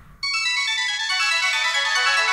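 Synth-pop music starting suddenly a fraction of a second in: a fast run of bright electronic keyboard notes stepping steadily downward in pitch.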